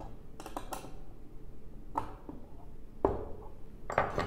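Metal mounting bracket being handled and tightened on a table: scattered clicks and knocks of metal parts. There is a quick run of clicks under a second in and a louder knock about three seconds in.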